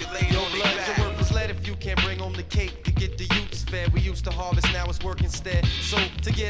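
Hip hop record played on turntables in a DJ mix: a rapped vocal over a drum beat and deep bass line.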